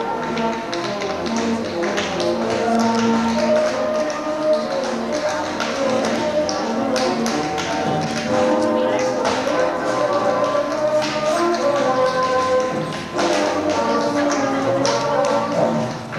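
Tap dancing to recorded music: quick, irregular taps of tap shoes on the stage floor over a melody.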